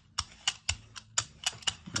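Hand brayer rolled quickly back and forth through tacky acrylic paint on a gel plate, giving a rapid series of sharp clicks, about four or five a second.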